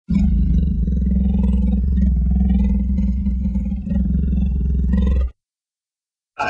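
A big cat's deep, loud roar running for about five seconds, then cutting off abruptly.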